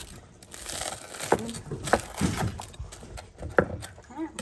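A chef's knife sawing through a grilled cheese sandwich on a wooden cutting board: crackly crunching of the crisp toasted crust, with a few sharp clicks.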